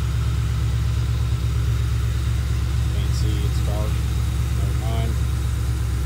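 Ford Crown Victoria Police Interceptor's V8, fitted with headers and a cold air intake, idling steadily with an even low rumble.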